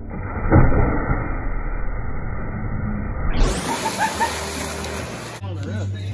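A person plunging feet-first into a backyard swimming pool: a loud splash about half a second in, followed by water churning.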